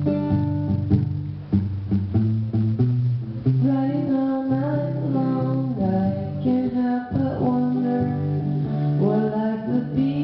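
Acoustic guitar played live, with a woman's voice singing over it from about four seconds in, the notes gliding and wavering.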